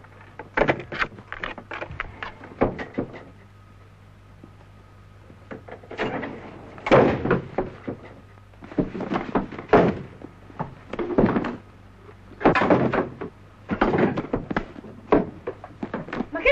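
A door shutting, then a string of knocks and thumps as wooden chairs are dragged and shoved against the door to barricade it, with a pause partway through. A steady low hum runs underneath.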